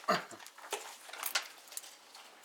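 A person coughs once, followed by a hesitant 'uh'. A few faint short clicks follow over the next second and a half.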